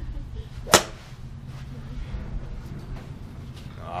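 Golf club striking a teed ball off a driving-range mat: one sharp crack about three quarters of a second in.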